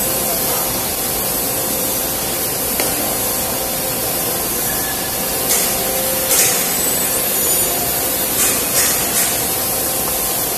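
Automatic cardboard laminating machine running: a steady airy hiss with a faint even hum underneath. A few short clicks and clatters come in the second half.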